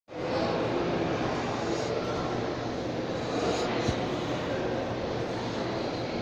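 Steady room noise of a large indoor shopping-centre food court: a constant drone with faint, distant voices mixed in, and a single brief knock about four seconds in.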